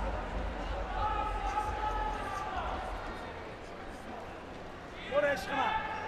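A distant voice in a large sports hall: one long held call about a second in, then a few words near the end, over a low steady hum.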